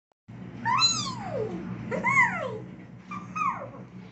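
Domestic cat meowing three times, each call rising briefly and then sliding down in pitch, over a low steady hum.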